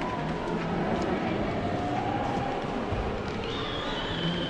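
Indistinct chatter of many visitors in a crowded palace gallery, with their footsteps on the wooden parquet floor.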